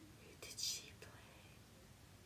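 A woman whispering under her breath, with one short hissing sound about half a second in.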